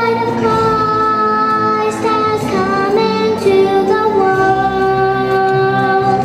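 A young girl singing a solo in long, held notes, her voice stepping down in pitch about halfway through.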